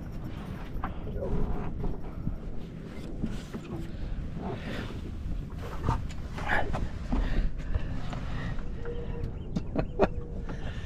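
Wind buffeting the microphone in a steady low rumble, with a few short knocks and clinks from the anchor chain and gear being handled on the boat, and faint, indistinct voices.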